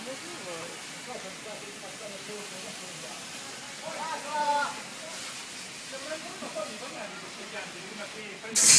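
Indistinct voices of people talking at a distance, a little louder about four seconds in, over a steady hiss.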